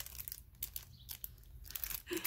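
Clear plastic packaging crinkling in the hands as a small item is handled inside it: a string of short, irregular rustles.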